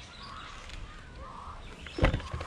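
Faint, distant shouting and calling from people playing football, a few drawn-out calls that rise and fall over a low background rumble.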